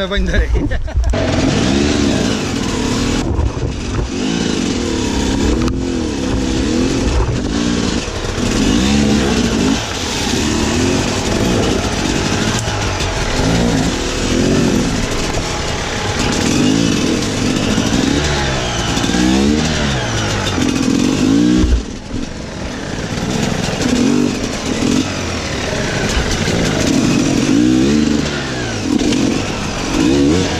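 Sherco enduro motorcycle engine revving up and down over and over as the bike is ridden slowly through a rocky stream bed. About two-thirds of the way through there is a sharp click and the sound drops for a moment, then the revving picks up again.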